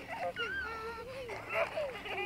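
Young children's voices: high, excited calls and squeals that swoop up and down in pitch, with no clear words.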